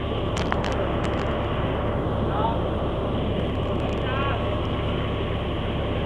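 Large coach bus idling: a steady low engine rumble, with faint distant voices behind it.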